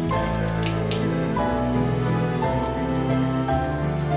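Cumin seeds sizzling in hot oil in a wok: a steady frying hiss with a few sharp pops a little under a second in. Background music with sustained notes that change every second or so plays over it.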